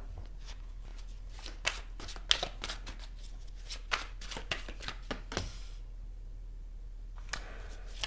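A deck of tarot cards being shuffled by hand: a run of quick, irregular card snaps and flicks that stops about two-thirds of the way through, with one more tap shortly before the end.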